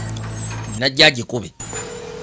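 A short spoken phrase about a second in, over a steady low hum. Near the end a single steady higher tone begins.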